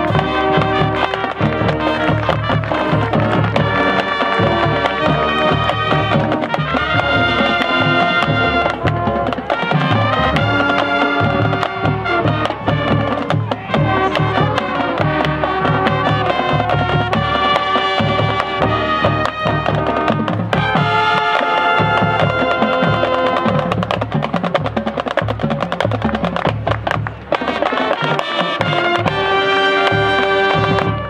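High school marching band playing loudly: brass (trumpets, mellophones, trombones) over a marching drumline, ending on a held chord near the end.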